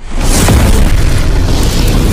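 A loud cinematic boom from a logo-reveal sound effect. It hits suddenly and holds as a dense rush with a deep rumble underneath.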